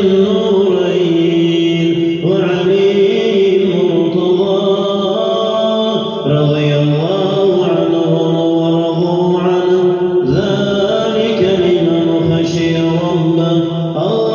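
A man chanting a melodic Islamic recitation in long phrases on drawn-out, gliding notes, pausing briefly for breath about every four seconds.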